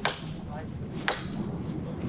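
Two chops of a hand blade into a birch trunk, sharp strikes about a second apart.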